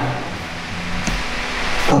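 Steady room noise and hiss in a pause between a man's words, with a faint click about a second in.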